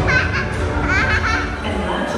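Two short bursts of high-pitched children's voices calling out over loud background music with a deep bass rumble.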